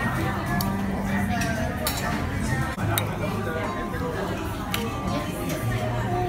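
Spoon clinking against a serving plate a few separate times, over a restaurant background of chatter and music.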